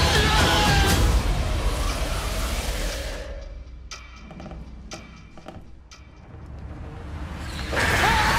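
Horror trailer score: a loud, dense swell of music that dies away after about three seconds to a quiet stretch with scattered sharp ticks, then surges loud again just before the end.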